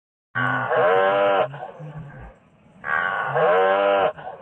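A cow mooing twice: two long, loud calls, the first starting just after the beginning and the second about three seconds in.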